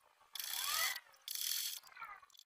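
Vintage black sewing machine stitching a seam in two short runs of about half a second each, with a brief pause between them.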